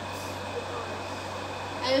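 Steady low hum and even hiss of a running room air conditioner.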